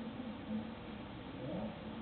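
Faint, indistinct voices, with no clear words.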